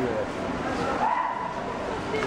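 Voices of passers-by in a busy pedestrian street, with one short high-pitched cry about a second in.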